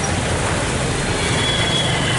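Mahindra Bolero SUV's diesel engine running close by, a steady low rumble over the even hiss of street noise, with a faint thin whine about halfway through.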